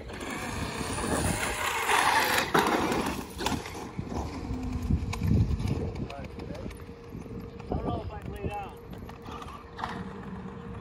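Electric RC monster truck (Traxxas X-Maxx) driving on concrete, its brushless motor whining and tyres rolling, loudest in the first few seconds and then fading. Voices come in briefly later on.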